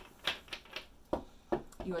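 Tarot cards being handled on a table: about six quick, light clicks and taps spaced irregularly.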